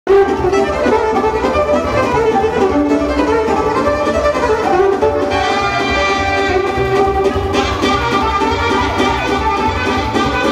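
Romanian hora folk dance music, with a violin carrying the melody over a steady bass beat.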